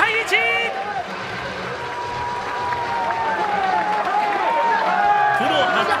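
Cheering and shouting voices celebrating a three-run home run, with several long held shouts that slowly fall in pitch over a background of stadium noise.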